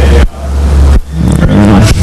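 A loud low hum that swells and cuts off sharply about every three-quarters of a second, with a faint, distant voice under it.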